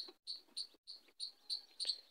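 Short, high chirps repeated about four times a second, from a small bird or insect in the background.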